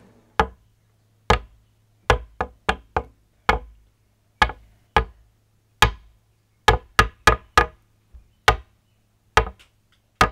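A series of sharp, irregular knocks or taps, roughly two a second, over a faint steady low hum.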